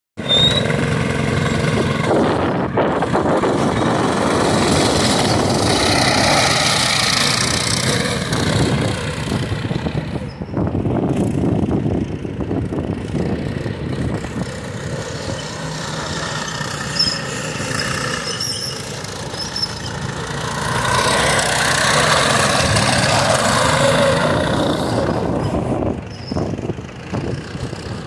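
Engines of two off-road go-karts racing on a dirt track, revving up and easing off. They are loud close by at the start, fainter through the middle as the karts run off into the distance, and louder again for a few seconds past the middle.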